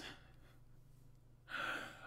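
A man's short audible intake of breath about a second and a half in, over near silence with a faint steady low hum.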